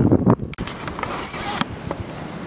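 A steady rushing noise over the camera's microphone, with a few light knocks from handling or footfalls. It starts just after the end of a spoken word.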